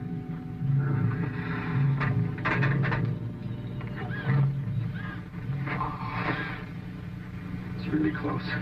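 Film soundtrack music with a low note pulsing about once a second, with voices over it.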